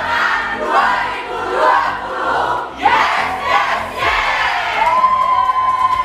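A large group of young people shouting and cheering together, ending in one long held shout.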